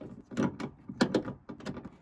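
Hand socket ratchet clicking in short, uneven strokes as it unbolts a car's boot lock mechanism: about six sharp clicks over two seconds.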